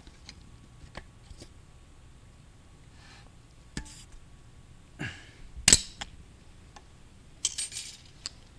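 Pliers prying a large steel circlip out of its groove in the aluminium bore of a 2002 Honda Odyssey automatic transmission case: scattered small metallic clicks and scrapes, a sharp clink a little before six seconds in, and a short rattling scrape near the end.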